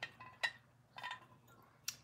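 A few faint clicks and light clinks of a porcelain teapot being turned over in the hands, its lid and body knocking lightly, one clink ringing briefly.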